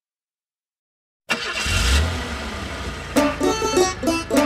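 Silence for about the first second, then a cartoon bus engine sound effect starts up with a low rumble. About three seconds in, plucked banjo music begins.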